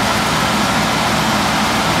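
Slavutich KZS-9-1 combine harvester's engine idling steadily, an even low throb, running freely after an easy start.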